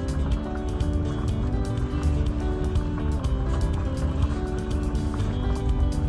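Background music with a beat and sustained melodic notes.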